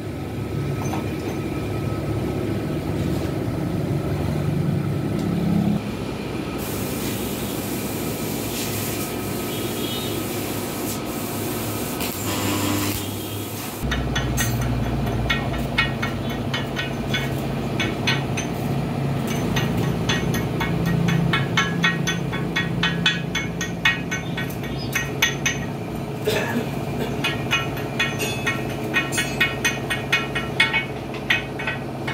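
A gas torch flame heating the steel eye of a truck leaf spring, from an abrupt change about halfway through: a steady low rush with dense rapid crackling. Before it there is a steadier workshop noise, with a high hiss for several seconds in the middle.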